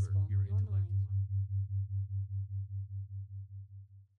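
Low electronic tone pulsing evenly about six times a second, fading out steadily and stopping at the very end. For the first second it sits under layered voices repeating affirmations.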